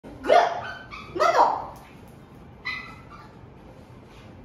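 Small mixed-breed dog barking: two sharp barks in the first second and a half, then a shorter, softer one near three seconds.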